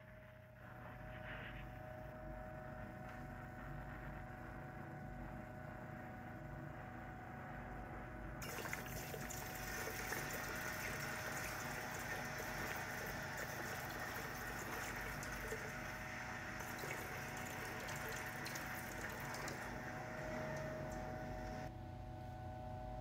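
Torch flame playing on a crucible of molten karat gold and silver, then, from about eight seconds in, a louder sizzling hiss as the melt is poured in a thin stream into a pot of water and quenched into shot.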